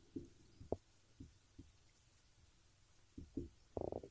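Faint sounds of a red marker writing on a whiteboard: a few short strokes in the first second and a half, a lull, then more strokes near the end.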